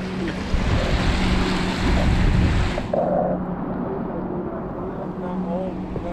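Lake waves washing over a concrete ledge, with wind on the microphone. About three seconds in the bright hiss cuts off abruptly, leaving a duller low rumble and faint voices over a steady low hum.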